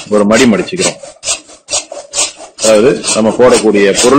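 A green plastic bag crinkling and rustling in short strokes as it is handled.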